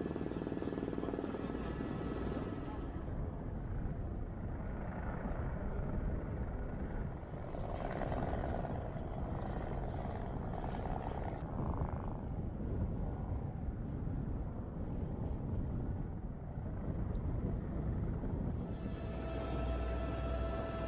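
Steady low rumbling noise that changes character abruptly about three seconds in and again near the end, with faint voices in the middle.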